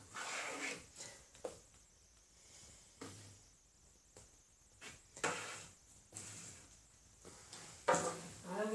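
Soft handling sounds of plastic paint cups on a canvas: a plastic cup of poured acrylic paint is flipped upside down and set onto the wet canvas, with a few light knocks and short rustles, the loudest about five seconds in.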